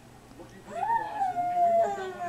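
A baby's long, high-pitched squealing vocalization, starting a little under a second in and holding for over a second with a slight fall in pitch.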